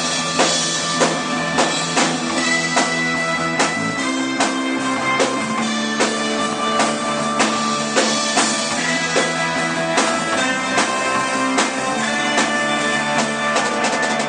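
A band playing live without vocals: a drum kit keeping a steady beat of about one and a half hits a second under guitar.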